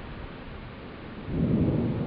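Thunder rumbling, coming in loud and low a little over a second in over a steady background hiss.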